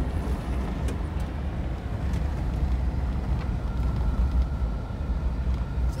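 Steady low rumble of a vehicle driving on a dirt road, heard from inside the cab: engine and tyre noise with a few faint ticks. A faint thin steady whine comes in about halfway.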